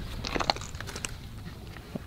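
Faint crackling and rustling of dry roots, soil and dead branches around an uprooted dwarf Alberta spruce, with a couple of sharp clicks about half a second and a second in.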